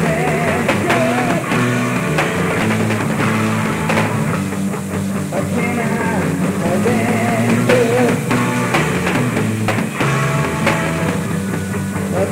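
Live rock band playing an instrumental passage: electric guitar, bass guitar and drum kit.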